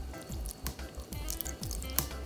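Soft background music, with faint drips and splashes of salad dressing being poured from a bottle onto pasta salad in a bowl.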